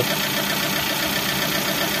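Suzuki APV's four-cylinder petrol engine idling steadily, running smoothly now that its stumble (mbrebet), traced to a weak ignition coil on cylinder 4, has been cured.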